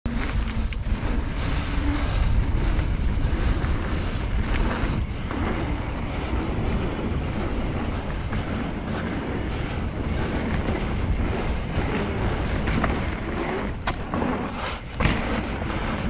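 Wind noise on the microphone of a mountain bike descending a dirt and gravel trail, with tyres rolling over the ground and a few sharp knocks as the bike rattles over bumps.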